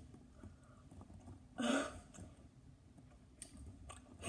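Mostly faint room sound, broken once about one and a half seconds in by a short, stifled throat noise from a boy straining over a mouthful of very sour Skittles.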